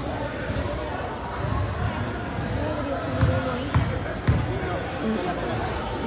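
A basketball being dribbled on a hardwood gym floor, a few bounces about half a second apart near the middle, as the shooter readies a free throw. Voices talk in the background.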